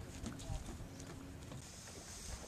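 Footsteps running on a wooden boardwalk: a quick, uneven series of light knocks on the planks, fading as the runner moves away.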